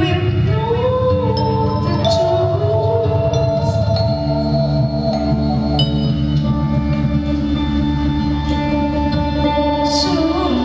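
Ambient electronic music played live: low steady drones and held electronic tones, with a wordless female voice through a microphone gliding up and down over the first few seconds, then settling into longer held notes.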